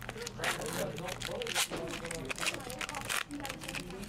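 A trading-card pack's wrapper being torn open and crinkled by hand: an irregular run of sharp crackling rustles.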